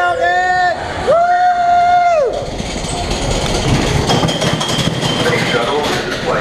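Two long high-pitched held tones in the first two seconds, then the Space Mountain coaster car rumbling and clattering steadily along its track.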